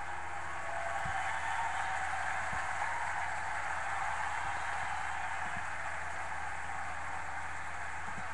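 Steady hiss of background noise with a few faint, low, dull thumps.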